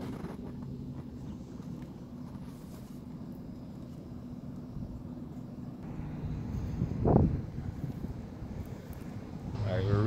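Steady low mechanical hum, with a brief rising sound about seven seconds in.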